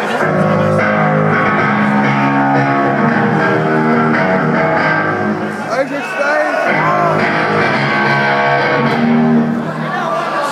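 Amplified electric guitar and bass playing held, ringing notes through a concert PA.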